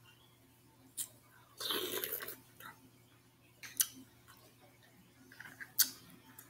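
Close-miked eating sounds as mussels and neckbone meat are picked apart and eaten by hand: a short slurp about two seconds in, and a few sharp clicks spread through the otherwise quiet stretch.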